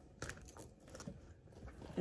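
Faint handling sounds of a small zippered handbag being unzipped and opened: a short rustle about a quarter second in, then a few light clicks and rustles.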